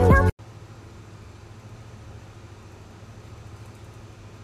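A song with singing cuts off abruptly just after the start, followed by a steady low hum with a faint hiss.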